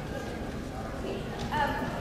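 Low rumble and murmur of a large hall between remarks, with a short burst of a voice about one and a half seconds in.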